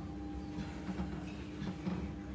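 A steady faint hum, with a few soft taps and rustles as toppings are placed on a metal baking tray.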